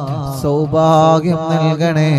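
A voice chanting an Arabic salawat, a blessing on the Prophet, in drawn-out, ornamented melodic notes over a steady low drone.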